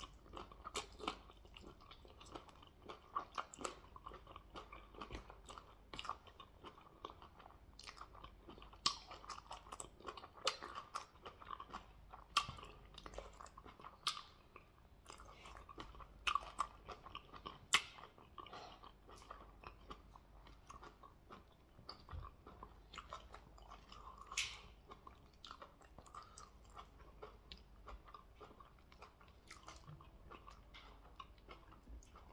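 Close-miked chewing of stewed goat head meat, eaten with the fingers: wet mouth noises with many sharp smacks and clicks, the loudest near the middle.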